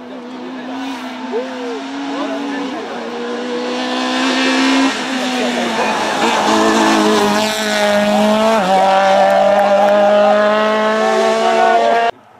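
Small Peugeot rally car's engine at high revs, growing louder as the car approaches, its note held steady with a few sudden steps in pitch as it changes gear. It cuts off abruptly at the end.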